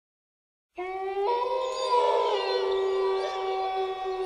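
Wolves howling together: long, held notes overlapping, starting a little under a second in, with a second, higher howl joining soon after.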